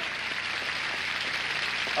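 Steady applause from a game-show studio audience, greeting a correct answer.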